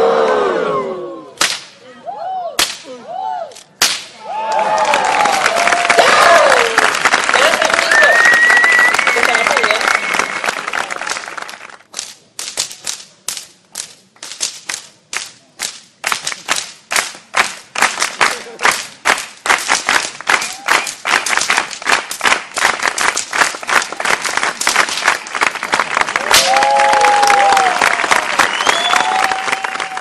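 Three sharp whip cracks in the first few seconds, then a crowd cheering and applauding with shouts and whistles. This turns into steady rhythmic clapping in unison, about two to three claps a second, and ends in more cheering.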